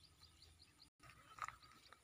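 Near silence: faint outdoor background, broken by a brief dead-silent dropout about a second in, with a few faint ticks soon after.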